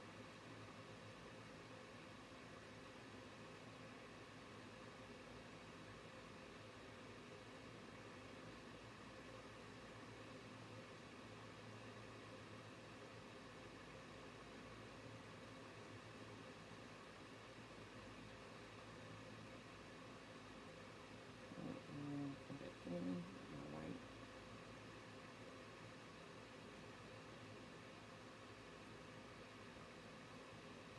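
Near silence: steady room tone with a faint constant hum, broken by a brief low murmur about three-quarters of the way through.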